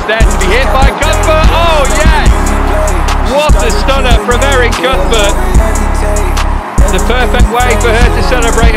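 Background music: a beat with a deep, heavy bass that cuts out briefly several times, ticking hi-hats and a singing voice over it.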